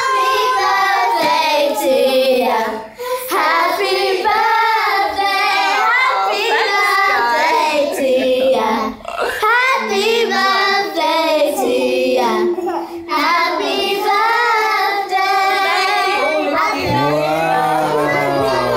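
Singing by high, young voices, carrying on without a break as one continuous melody.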